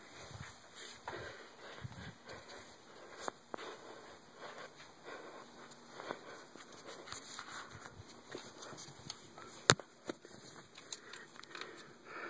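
Faint, scattered rustling and scuffing from a phone being handled and moved about, with one sharp click a little before ten seconds in.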